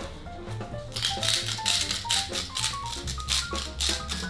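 Hand-twisted pepper mill grinding over a pot in quick repeated strokes, about four or five a second, starting about a second in. Background music with a steady bass plays underneath.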